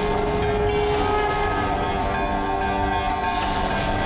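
Dramatic background music built on sustained, droning chords with several held tones.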